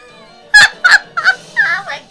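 A woman laughing hard: about five loud bursts of laughter in quick succession, starting about half a second in.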